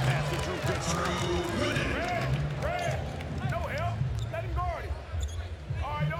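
Basketball play on a hardwood court: from about two seconds in, sneakers squeak again and again, short rising-and-falling chirps, over the ball bouncing and the murmur of an arena crowd.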